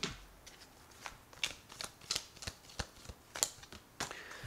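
A deck of reading cards being shuffled by hand: a run of quick, irregular card flicks and snaps, with a card drawn near the end.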